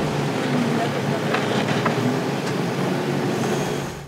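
Volvo BL71B backhoe loader running steadily as its bucket digs into and tips out loose soil, with a couple of light knocks from about a second in.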